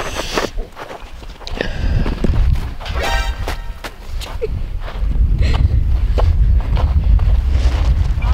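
Footsteps crunching in snow, with wind rumbling on the microphone that grows heavier about halfway through.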